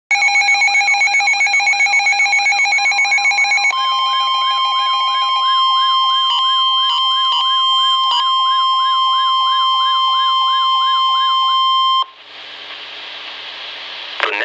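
Midland NOAA weather radio sounding its warbling siren alert, a sweep about four times a second, with the broadcast's steady warning alarm tone joining about four seconds in: the alert for a Special Marine Warning. A few short beeps come a little past halfway. Both tones cut off about twelve seconds in, leaving radio hiss.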